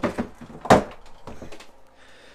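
Hard plastic lid of a thermoelectric cooler being unlatched and pulled open: a few knocks and clunks, the loudest a sharp clunk a little under a second in.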